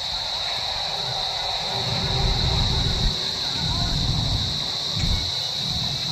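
Quiet pause in an open-air congregational prayer while the worshippers are in silent prostration between the imam's calls. Low wind rumble on the microphone swells a few times in the middle, over a steady high-pitched whine.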